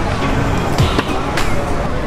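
Freestyle kick scooter's wheels rolling over the road, with a few sharp clacks about a second in, over background music.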